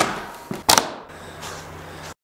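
A door latch clicking, then a loud clack from a door about two-thirds of a second in, followed by a steady low hum.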